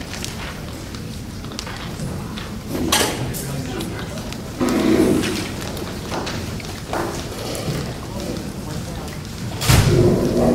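Murmur of audience members talking among themselves at tables in a large echoing hall, with scattered small knocks. A single loud thump near the end.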